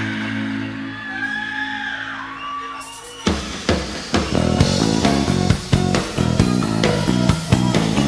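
Rock band playing live, recorded straight from the mixing desk: held guitar and keyboard notes for the first few seconds, then the drums and the full band come in about three seconds in.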